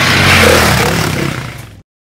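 A whoosh sound effect over a low hum, swelling to its loudest about half a second in, then fading over about a second and stopping abruptly near the end.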